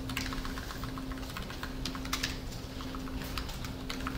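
Typing on a computer keyboard: quick, irregular runs of key clicks with brief gaps between them.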